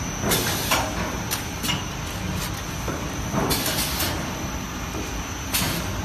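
Paper muffin-cup forming machine running: a steady mechanical hum with a thin, steady high whine, broken by short hissing bursts that come irregularly, roughly every half second to second.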